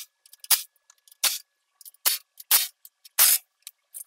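A cordless impact tool with a 14 mm socket working the bumper mounting nuts loose in short bursts, about six quick bursts in four seconds with small metal clicks between.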